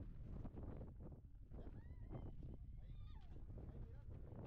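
Wind rumbling on the microphone in open air on a mountain summit, with faint voices of other people around. Two brief high-pitched calls about two and three seconds in.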